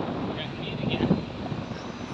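Outdoor city ambience: a steady low rumble with faint, indistinct voices in the first second or so.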